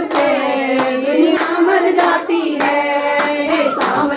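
Women singing a Hindi devotional song to Krishna, with sustained melodic lines, over steady rhythmic hand clapping, about two claps a second.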